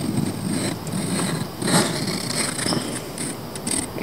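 Pencil compasses scratching on paper as circles are drawn, a few short scratchy strokes over a steady background hiss.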